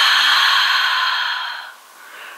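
A woman's long, slow breath out, a deliberate relaxing exhale like a drawn-out sigh, fading away near the end.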